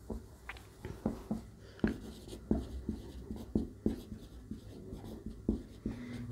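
Marker pen writing on a whiteboard: a run of short, irregular strokes and taps.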